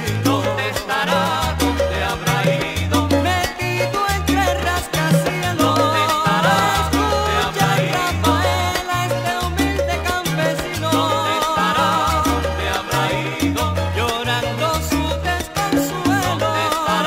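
Salsa music in an instrumental passage, without singing. A bass line moves in a steady repeating pattern under held melody notes with vibrato.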